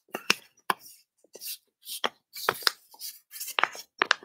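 A sheet of paper being folded and creased by hand close to the microphone: a string of sharp crackles, snaps and rustles.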